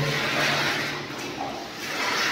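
Water pouring from a plastic mug into a plastic bucket, splashing onto the detergent powder and water in it to mix a cleaning solution. The pour thins a little past the middle and picks up again near the end.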